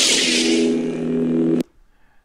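Sith lightsaber ignition sound effect: a sudden hissing burst as the blade opens, settling into a steady electric hum that cuts off abruptly about a second and a half in.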